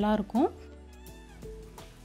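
A woman's voice ending a phrase on a rising note, then soft background music with held notes under it.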